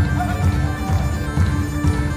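Bagpipes playing a tune over a held drone, with band accompaniment and drums keeping a steady beat.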